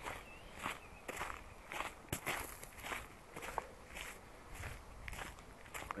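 Footsteps on a sandy, gravelly dirt path at a steady walking pace, about two to three steps a second.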